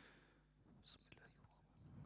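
Near silence: faint breathing and a brief soft hiss into a close-held microphone about a second in, with a low murmur of voice starting near the end.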